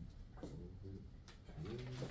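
Faint, low murmuring from a man's voice, a hum-like 'mm' heard twice, with two light taps between.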